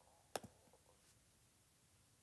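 A single mouse click, the button's press and release a tenth of a second apart, against near silence.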